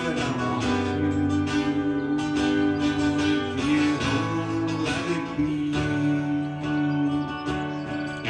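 Acoustic guitar music: an instrumental stretch of a song, with long held notes over a steady accompaniment.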